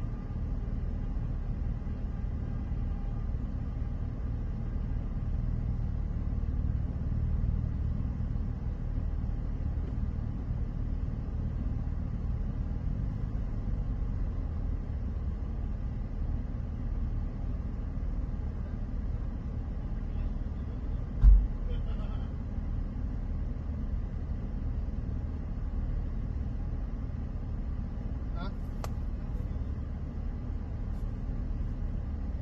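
A vehicle's engine idling, heard from inside the cab as a steady low rumble, with one loud dull thump about 21 seconds in.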